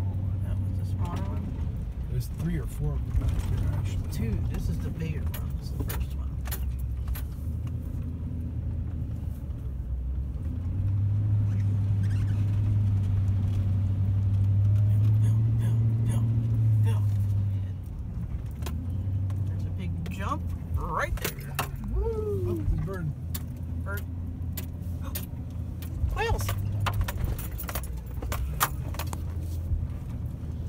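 Truck engine running at low speed, heard from inside the cab on a rough dirt track. Loose items click and rattle throughout. The engine drone grows louder for about six seconds from roughly a third of the way in, then drops back.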